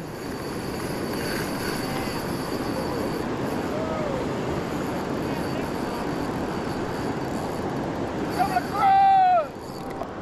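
Steady rushing of river water flowing out below a dam, with a short shout near the end.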